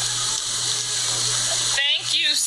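Steady, loud hiss with a low hum under it, then a woman's voice starts speaking near the end.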